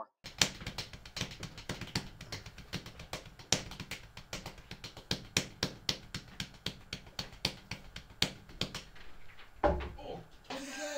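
Drumsticks tapping lightly on an acoustic drum kit: a fast, uneven run of sharp taps over a faint low hum, with a heavier thump near the end.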